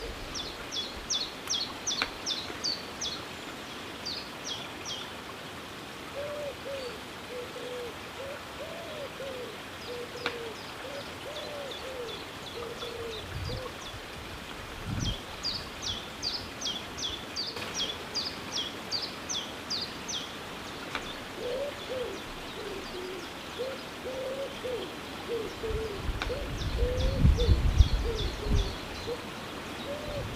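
Woodpigeons cooing, a run of low repeated notes through most of the stretch, while a small songbird sings short bursts of quick, high, falling notes three times. A loud low rumble comes near the end.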